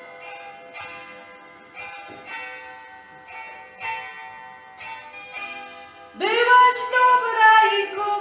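Zither strings plucked by hand in a slow folk melody, each note ringing and fading over one sustained tone. About six seconds in, a woman's singing voice comes in loudly with a rising glide.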